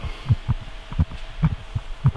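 Irregular low thumps, about two or three a second, over a faint steady hum: the noise of a faulty camera microphone.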